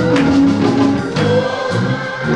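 Gospel choir singing with instrumental accompaniment, with sharp drum strokes several times across the music.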